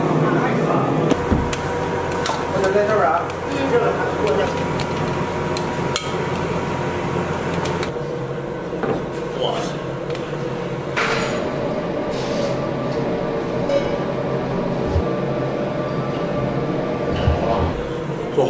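Busy noodle-shop ambience: clinks and knocks of steel bowls, ladles and crockery over a steady hum and indistinct voices in the background.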